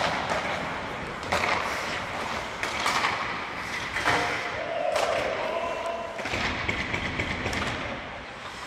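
Ice hockey practice in an arena: skate blades scraping and hissing on the ice in repeated surges, with a sharp crack at the very start. A voice calls out briefly about halfway through.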